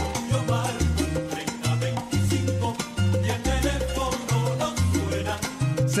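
Salsa music playing without vocals: a bass line stepping from note to note under steady percussion strokes. A sung line comes back in right at the end.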